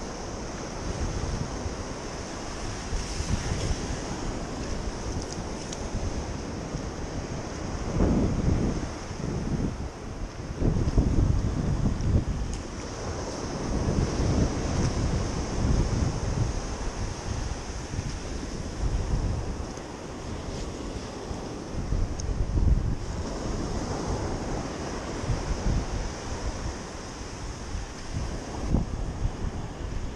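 Wind buffeting the microphone in irregular gusts over the wash of shallow surf.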